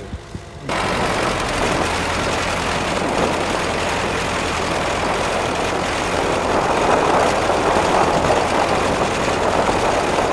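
Ford farm tractor engine running steadily, heard close up from on board, with water splashing and rushing past the pontoons; the sound jumps in abruptly under a second in. The engine is driving a propeller through its PTO.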